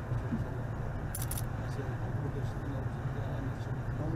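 Steady low rumble of wind buffeting the microphone on a ship's open deck at sea, with faint men's voices under it and a brief jingling click about a second in.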